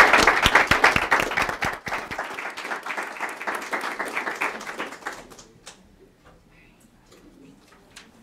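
Audience applauding, loud at first and thinning out until it dies away about five seconds in.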